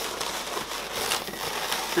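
Inflated latex modelling balloons rubbing against each other as a thin balloon is wrapped around the others by hand, with scattered faint crackles.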